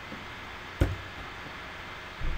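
A single sharp computer-mouse click about a second in, over the steady faint hiss of the microphone.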